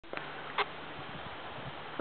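Steady outdoor background hiss with a faint low hum, broken by a small click near the start and one short, sharp click about half a second in.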